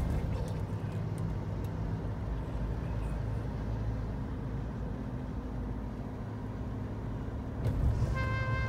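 Steady road and engine noise inside a moving car's cabin, a low rumble with a brief swell near the end.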